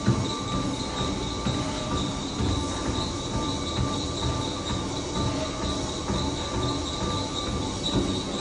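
Life Fitness treadmill running with a steady high-pitched motor whine, under footsteps on the moving belt.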